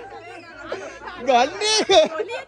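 People's voices talking, with one voice louder near the end.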